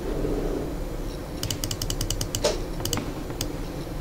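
Clicks from a computer mouse: a quick, even run of about seven clicks near the middle, then a few single clicks.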